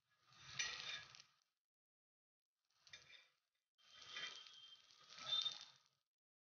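Metal spatula scraping and clinking against a flat griddle pan (tawa) as frying potato patties are moved and turned, in three short bursts, the last and longest near the end.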